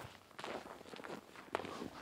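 Footsteps in snow, faint and irregular, with one sharp click about one and a half seconds in.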